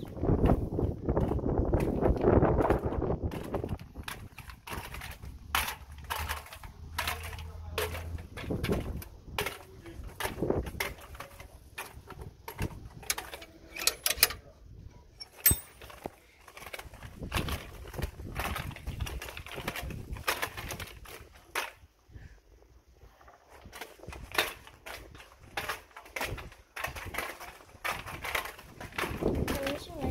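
Roller skates moving over brick paving: an irregular string of sharp clicks and knocks from the wheels and skates striking the bricks.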